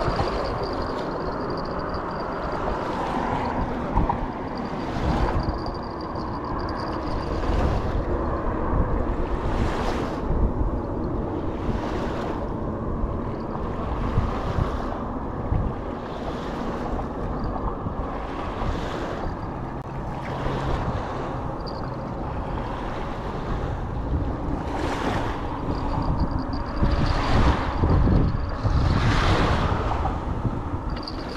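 Wind buffeting the microphone in a steady low rumble, with small waves washing onto a sand beach about every two seconds.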